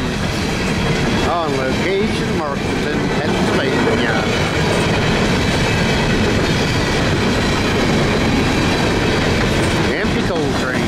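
Empty CSX coal hoppers rolling past at speed: a steady, loud rumble and clatter of steel wheels on rail. A few brief gliding squeals sound in the first four seconds.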